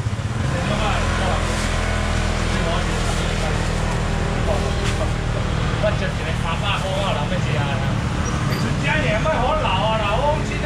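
Voices of a crowd chattering around a market stall, over a steady low hum of a vehicle engine running close by that sets in about half a second in.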